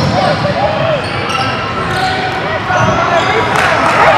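Basketball game on a wooden indoor court: ball bouncing, sneakers squeaking in short bursts, and players' voices calling out.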